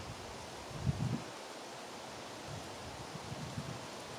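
Steady rustling hiss of wind through woods, with a few soft low bumps, the strongest about a second in.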